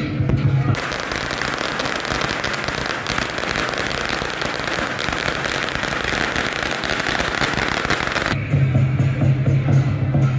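A long string of firecrackers going off as a rapid, continuous crackle of small bangs, starting under a second in and cutting off abruptly about eight seconds in.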